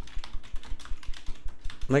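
Typing on a computer keyboard: a quick, irregular run of key clicks as words are typed out.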